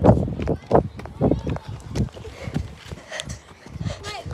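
Footsteps of a person running on a tarmac path, a thump about every half second, with voices among them.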